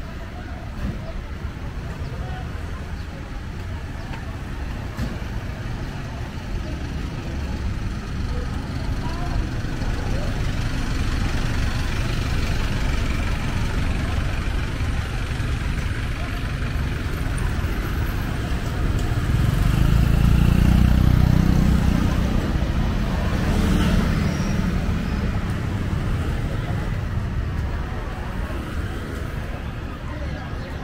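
Street traffic ambience: a steady wash of engines and tyres, with a motor vehicle passing close and growing louder to a peak about two-thirds of the way through before fading.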